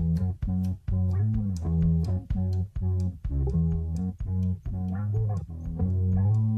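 Instrumental rock passage: bass guitar and guitar playing short, choppy repeated notes, about two to three a second, with no singing.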